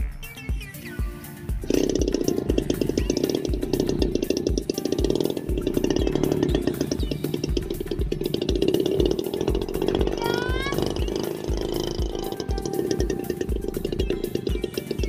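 Background music with a steady beat. From about two seconds in, a small two-stroke 411 brush-cutter engine on a homemade radio-controlled paramotor starts up and runs steadily under the music.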